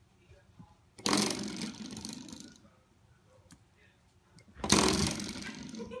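Spring door stop twanged twice, each time a sudden buzzing rattle of the coiled spring that dies away over a second or so; the second comes about three and a half seconds after the first.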